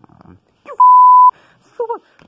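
One loud, steady, high beep about half a second long laid over a spoken word, the typical censor bleep. Short snatches of a voice come just before and after it.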